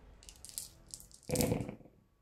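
A handful of about ten six-sided dice rolled onto a tabletop gaming mat: a few light clicks of dice in the hand, then a louder clatter as they land and tumble, about a second and a half in.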